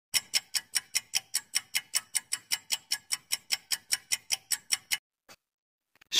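Clock-tick sound effect of a quiz countdown timer: steady, evenly spaced ticks, about five a second, stopping about a second before the end.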